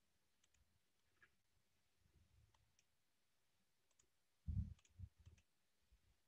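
Faint, scattered computer mouse clicks as options are picked from drop-down menus, over near silence. About four and a half seconds in comes a low thump, the loudest sound, followed by a couple of smaller ones.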